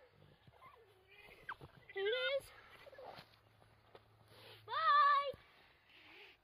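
A child's two high-pitched wordless shouts: a short rising one about two seconds in, then a longer, louder one about five seconds in.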